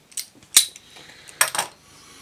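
A few light clinks and knocks of a glass beer bottle and glass being handled on a table: a sharp clink about half a second in, then a quick double clink past the middle.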